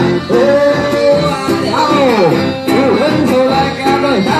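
Loud dance music with singing over guitar-like string instruments, a continuous melody with gliding notes.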